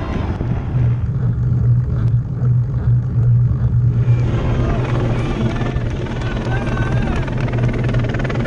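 A steady low engine drone, heard over a rush of wind on a moving camera's microphone. Faint voices come in during the second half.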